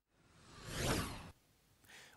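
A whoosh transition sound effect for a TV news logo wipe: one airy swell that builds over about half a second and then fades, cutting off sharply about a second and a half in.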